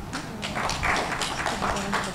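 A small group of people clapping: a dense, irregular patter of hand claps that builds about half a second in, with voices faintly underneath.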